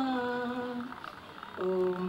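A woman's solo voice chanting a Sanskrit prayer verse to a sung melody. A long held note, slowly falling in pitch, fades out about a second in, and near the end she begins 'namo' on a new, lower note.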